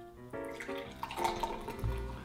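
A carbonated drink poured from an aluminium can into a glass, splashing and foaming as it fills, under instrumental background music.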